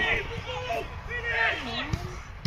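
Men shouting calls out on a football pitch during an attack on goal, their voices rising and falling, with a short thump near the end.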